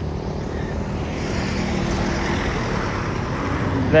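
Highway road traffic: engine and tyre noise from passing vehicles, swelling about a second in and easing toward the end.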